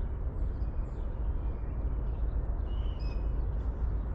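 Outdoor ambience: a steady low rumble with a few faint bird chirps about three seconds in.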